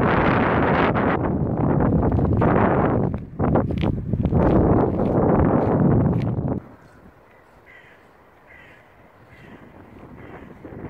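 Wind buffeting the microphone in heavy gusts, cutting off abruptly about two-thirds of the way through. In the quiet that follows, a bird calls faintly three times in short harsh calls.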